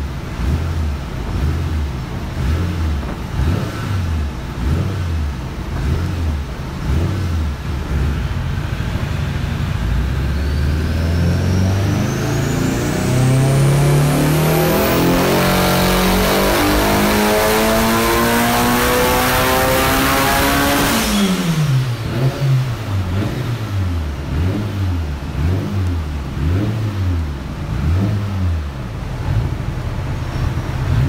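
Turbocharged Nissan SR20 2.2-litre stroker with a Garrett GTX3582R Gen II turbo making a dyno pull: it runs unevenly at low revs, then the revs climb steadily for about thirteen seconds with a rising whistle above the engine note. About three-quarters of the way through it comes off the throttle suddenly and the revs fall back to an uneven idle.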